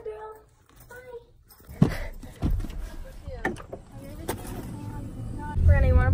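A short voice at the start, then a few sharp knocks and clicks, and near the end the steady low rumble of a car on the move, heard from inside the cabin, with a voice over it.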